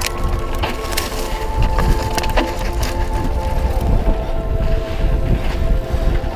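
Enduro mountain bike descending a dry, dusty dirt trail, heard from a camera on the bike or rider: the tyres crunch over dirt and stones while the bike clatters over bumps in a run of sharp clicks. Wind rumbles on the microphone throughout.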